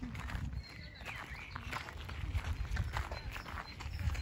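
Footsteps crunching on a gravel path, an irregular tread several steps a second, over a low rumble on the microphone.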